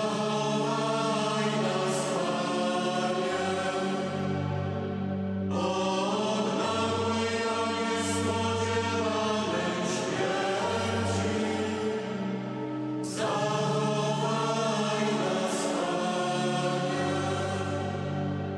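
Mixed choir of men's and women's voices singing a slow Polish Passion hymn in long held notes, with new phrases beginning about five and a half and thirteen seconds in.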